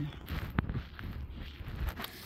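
Footsteps on gravel with low wind rumble on the microphone, and one sharp click about half a second in.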